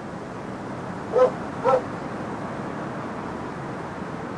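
A dog barking twice, about half a second apart, a little over a second in, over a steady background hiss.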